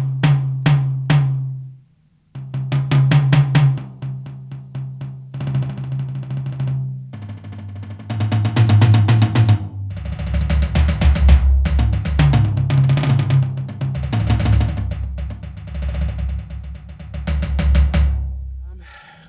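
Sampled tom sounds from a Roland TD-1KV electronic drum kit, played in quick runs of strokes, stepping down in pitch from the high tom to the lower toms. In the second half the playing moves into fast fills around the kit with a deep bass drum.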